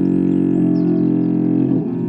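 Solo cello bowed, holding a sustained chord of several notes that shifts to new pitches near the end.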